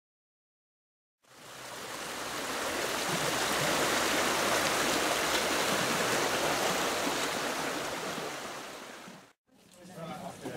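Steady rushing of a shallow river's water, fading in about a second in and fading out just before the end.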